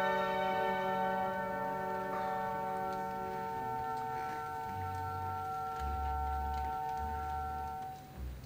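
Orchestral music in a soft passage: a chord held steadily, with a few low bass notes coming in about halfway through.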